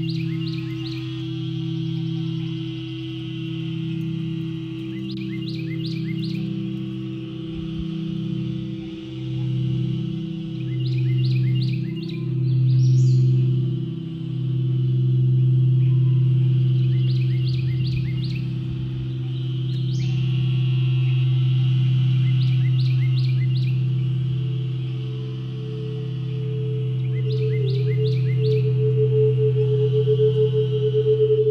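Crystal singing bowls ringing with several low, sustained tones that swell and pulse slowly, a higher bowl tone joining about three-quarters of the way through and wavering near the end. Over them a short bird phrase, a rising note followed by a quick run of notes, repeats about every five to six seconds above a steady high background chorus.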